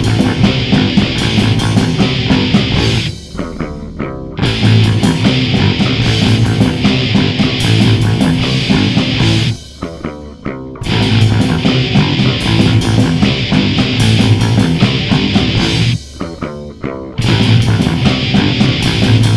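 Punk rock band playing an instrumental passage on electric guitar, bass and drums. The full band breaks off three times, about six seconds apart, leaving a second or so of sparse hits before crashing back in.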